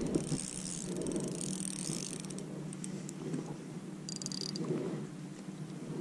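Spinning reel being cranked steadily under load, its gears whirring, as a hooked smallmouth bass is reeled to the boat.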